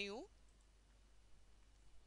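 Near silence with a few faint clicks near the end, from a computer mouse button being clicked.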